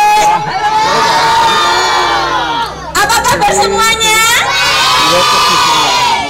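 A crowd of young children shouting together in unison: two long drawn-out shouts of about two and a half seconds each, with a short break about halfway through.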